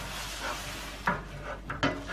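A damp cloth scrubbing across a metal oven tray coated in wet soda-crystal paste, wiping off loosened burnt-on grime, with a couple of short louder strokes about a second in and near the end.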